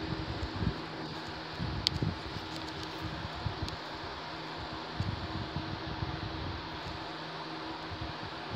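Steady background hum and hiss, like a fan running in a room, with a few faint clicks and soft low bumps.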